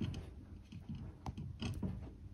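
Faint small clicks and scrapes of handwork: a thin tool dabbing Araldite epoxy on a ceramic tile and pliers holding a metal crimp, with a couple of sharper ticks in the second half.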